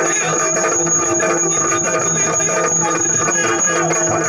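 Yakshagana accompaniment: a maddale drum playing a rhythm over a steady held drone.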